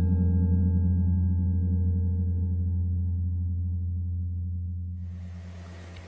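A low, sustained musical drone: one deep steady note with overtones, fading slowly toward the end.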